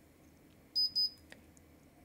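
Two short high-pitched electronic beeps in quick succession, about a second in.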